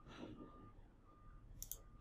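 Near silence: room tone with a faint high tone that comes and goes several times. One soft mouse click comes about one and a half seconds in.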